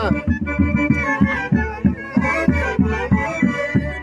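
Live Andean Santiago festival music from a band: wind instruments holding several notes together over a quick, steady drum beat.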